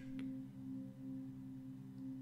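Soft meditative background drone: several low held tones sounding together steadily, with a slight regular waver.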